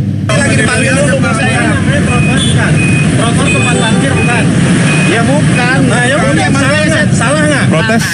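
Several people talking over one another in a heated street argument, with a large vehicle's engine running underneath. A short high beep sounds several times, irregularly, through the middle.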